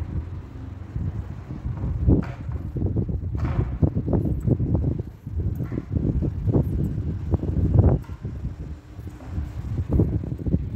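Wind buffeting the camera's microphone: a low, irregular rumble with stronger gusts about two seconds in, around three and a half seconds, and near eight seconds.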